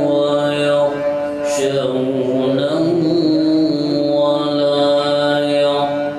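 A man's voice reciting the Quran in the slow, melodic tajweed style, drawing out long held notes over a microphone. A short breath or hiss about a second and a half in splits two sustained phrases.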